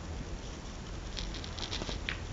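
Photo album pages being handled: a brief run of faint rustling and small clicks as a hand slides over the pages, starting a little after a second in, over a steady low room noise.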